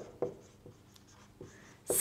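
Marker pen writing on a whiteboard: a few short, faint strokes of the felt tip across the board.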